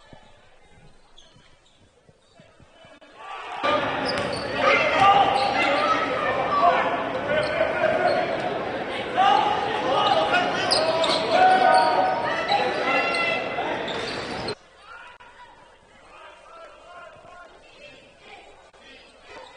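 Basketball game in a gym: a ball bouncing on a hardwood court. From about four seconds in, a much louder stretch of many voices echoing in the hall takes over and cuts off abruptly about ten seconds later.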